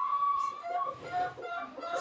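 A heavily pregnant cow lying down, breathing heavily and fast, a sign of late pregnancy about a month before calving. Over it come a drawn-out high call in the first second and a few short calls later.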